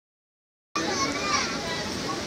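Children's voices chattering over a steady background noise, starting just under a second in after silence.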